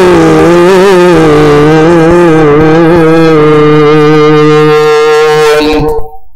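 A man's voice chanting one long, drawn-out note of Arabic sermon recitation through a microphone and PA system. The pitch wavers at first and is then held steady for several seconds before breaking off suddenly.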